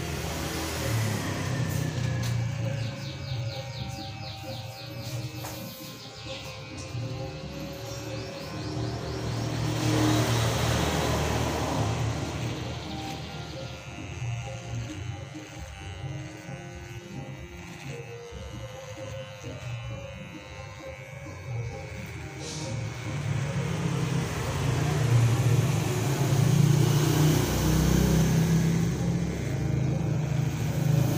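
Corded electric hair clipper buzzing steadily as it trims a man's head. It sits over background music and road traffic, with a vehicle passing about ten seconds in and more traffic swelling near the end.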